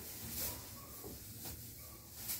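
Faint rustle of shiny plastic pom-poms shaken while dancing, brightest about half a second in.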